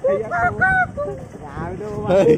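A voice over a motorcycle running along a rough dirt lane, with a steady low rumble beneath it.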